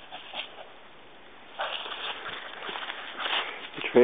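Dry fallen leaves rustling and crunching, an irregular crackle that starts about a second and a half in.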